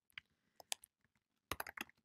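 Faint keystrokes on a computer keyboard as code is typed: a few scattered taps, then a quicker run of keystrokes in the last half second.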